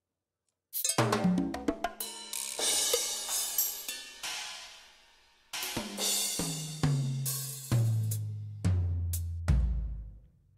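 Drum-kit samples from the SGM-V2.01 soundfont's Standard 1 kit, played one at a time in LMMS's SF2 Player as piano-roll keys are clicked, while searching for the bass drum. A quick run of short percussion hits comes first, then cymbals ring and fade. Last comes a series of drum hits, each lower in pitch than the one before, ending on a deep low thud.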